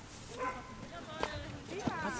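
Faint voices of people talking in the background, with one short knock a little past the middle.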